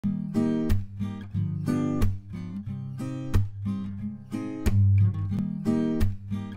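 Acoustic guitar playing the instrumental intro of a song, a steady repeating pattern of strummed chords over low bass notes.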